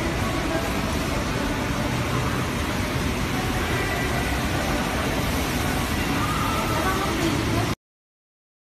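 Steady background noise of a factory workshop, with indistinct voices, cutting off abruptly near the end.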